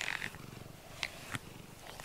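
A domestic cat purring steadily close to the microphone, content while it is being brushed, with a few faint short clicks.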